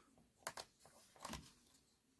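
Near silence with two faint clicks, about half a second in and again a little past a second, from fingers handling a small plastic servo and its wire lead in a foam wing's servo pocket.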